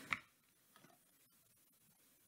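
Near silence: room tone, with one brief faint click just after the start.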